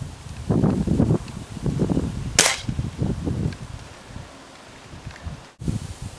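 A pellet gun (Remington Vantage .177 air rifle) fires a single shot about two and a half seconds in, a short sharp crack. There is low rustling noise before it.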